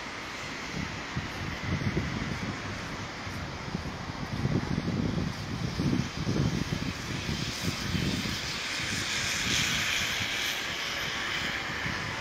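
Outdoor rushing noise with wind buffeting the microphone in irregular low gusts; a broader hiss swells up in the second half and fades again.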